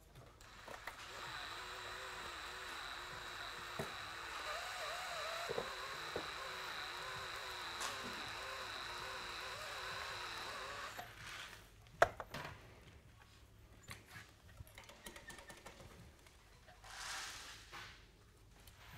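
Cordless DeWalt 20V MAX XR drill running a Uniburr chamfer bit against the cut end of a steel threaded rod, a steady whine with wavering cutting noise for about ten seconds, then the drill stops. A single sharp click comes about a second later, followed by light handling clatter.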